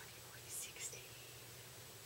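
A woman whispering faintly under her breath, two short soft whispers about half a second and a second in, over quiet room tone.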